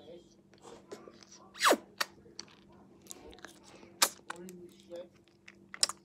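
Mouth noises of someone eating a frozen ice lolly: scattered wet clicks and smacks of sucking, with sharper ones about two, four and six seconds in.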